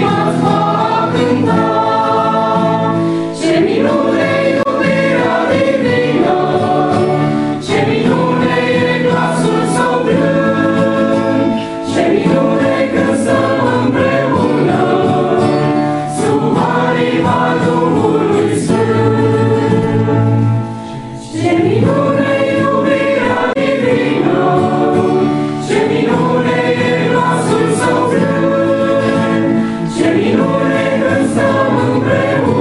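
A church choir of men and women singing a hymn together, in phrases of about four to five seconds with short breaks between them.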